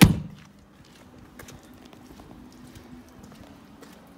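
Caravan toilet-cassette hatch door shut with one loud thud and a brief low ring, followed by faint footsteps on gravel.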